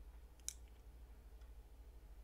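Near silence over a steady low hum, with one short click about half a second in.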